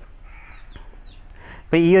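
Faint bird calls in the background during a pause in speech; a voice starts speaking near the end.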